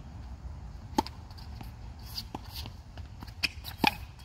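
Tennis racket striking the ball on a serve about a second in, a sharp pop, followed by fainter pops and shoe scuffs on the hard court and another sharp racket-on-ball hit near the end, over a steady low rumble.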